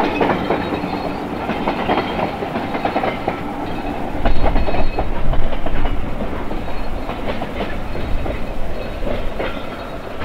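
Train running on jointed track, its wheels clacking over the rail joints, with a louder, deeper stretch about four seconds in.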